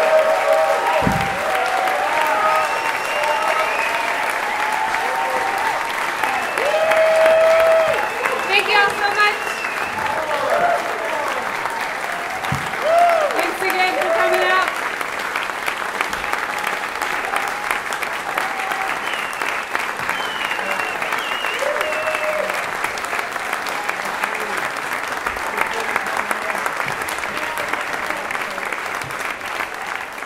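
A large audience applauding and cheering, with whoops and shouted voices over the first half, then steady clapping that fades out at the end.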